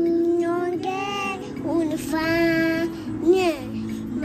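A toddler singing a melody in long, held notes, with music underneath.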